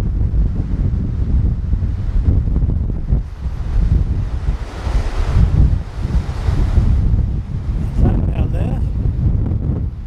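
Gale-force wind buffeting the microphone in heavy, uneven gusts, over surf breaking and washing on a shingle beach.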